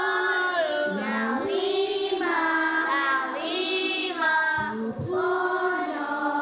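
A class of young children singing a song together, holding long sung notes.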